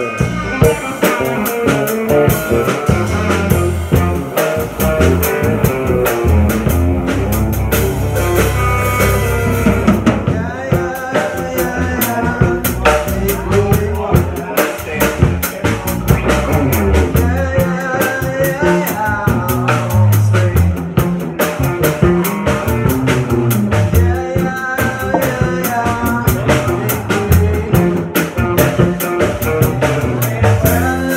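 Live band playing: electric guitar, electric bass and drum kit, amplified, with a steady beat throughout.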